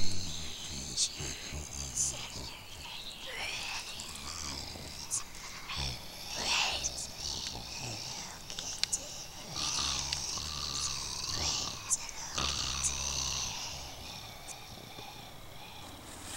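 Raspy, whispery zombie-style vocal growls and hisses with no words, in several drawn-out bouts that ease off near the end.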